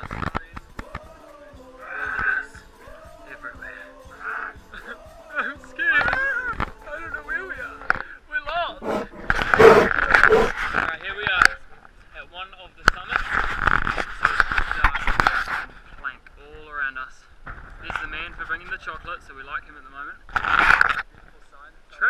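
People's voices, the words indistinct, with several louder noisy stretches of a second or two.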